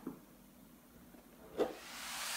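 Near silence, a short soft knock about one and a half seconds in, then near the end a rising hiss as electronic background music starts to swell in.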